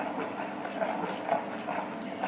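A metal spoon stirring runny jalebi batter in a plastic bowl, with irregular small scrapes and taps against the bowl. A steady low hum runs underneath.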